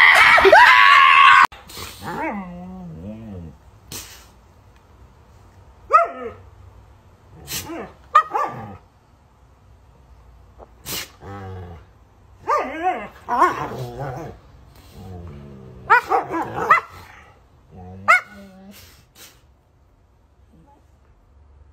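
A chihuahua's loud, high-pitched barking for about a second and a half, cut off suddenly. Then a husky's drawn-out, wavering whines and yowls come in separate bursts every second or two.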